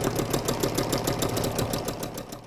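Electric sewing machine running steadily, its needle stitching through layered paper in a rapid, even rhythm of stitches.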